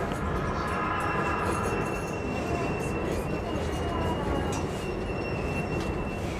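E233 series electric train running slowly on a curve, its wheels squealing over a low rolling rumble with occasional clicks. A steady high whine sets in about a second in and fades near the end, with lower squealing tones in the first two seconds.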